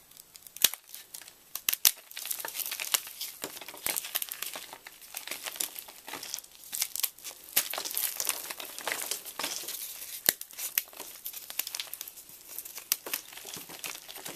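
A paint-coated block of gym chalk being cracked apart and crumbled by hand: a few sharp snaps in the first two seconds, then steady crunching and crackling as the painted crust and the powdery chalk break up.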